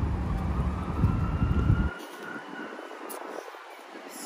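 Outdoor city background noise: a low rumble that cuts off abruptly about two seconds in, leaving a quieter background with a faint, slightly wavering high tone.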